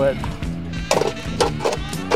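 Bricks knocking against one another and the metal weight box as they are loaded onto a lawn-and-garden tractor pulling sled, about four knocks in the second half, with background music underneath.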